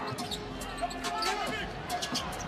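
Basketball dribbled on a hardwood court, a run of sharp repeated bounces, with arena background noise.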